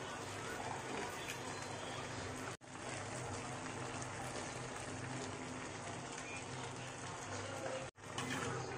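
Steady simmering hiss of a pork menudo stew, meat and vegetables in tomato sauce cooking in a wide aluminium wok on the stove. The sound breaks off for an instant twice.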